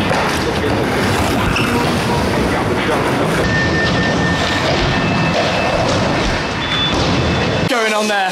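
Skateboard wheels rolling over a concrete skatepark: a loud, continuous rumble, heaviest in the low end, that runs without breaks until the footage cuts away near the end.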